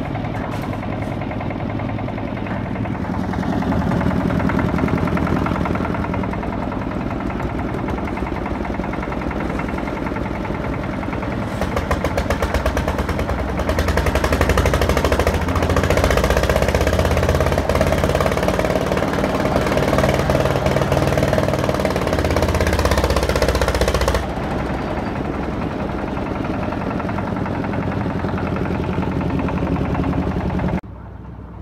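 Concrete mixer's engine running with a fast, knocking rattle. It grows louder about a third of the way in and drops suddenly about two-thirds through.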